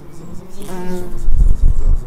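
A bumblebee buzzing as it flies close past the microphone, followed in the last second by a loud low rumble.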